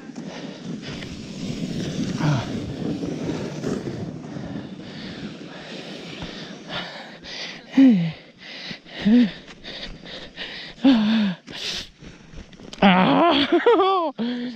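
Wooden sled sliding down packed snow: a steady rushing scrape of the runners over the snow for the first several seconds. After it stops, a few short falling vocal sounds are heard, and a voice near the end.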